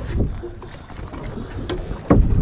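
Wind buffeting the microphone over the wash of the sea around a small drifting boat, with a low rumble at the start and a couple of faint clicks near the end.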